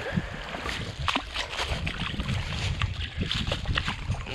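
A hooked walleye splashing and thrashing in shallow water as it is landed at the river's edge. Scattered small splashes and rustles run through it.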